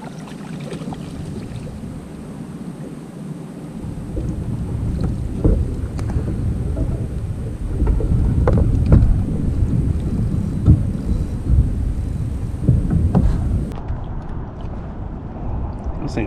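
Wind rumbling on a kayak-mounted action camera's microphone, growing much stronger about four seconds in, with water against the kayak hull. Several sharp knocks and splashes come through it as a fish is reeled in and swung out of the water aboard.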